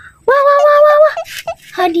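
A person's voice: one long, held exclamation lasting about a second, then talking starts near the end.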